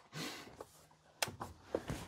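Faint rustle and a few light clicks of a rifle being handled and brought up to the shoulder, with one sharper click a little over a second in.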